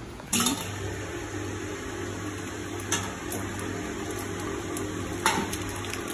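Electric churner motor running steadily in a clay pot of cream, churning it into butter, with the cream sloshing and a couple of short knocks. The hum starts suddenly just after the beginning.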